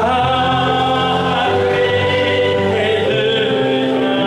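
Worship music: a man singing long held notes over sustained electronic keyboard chords.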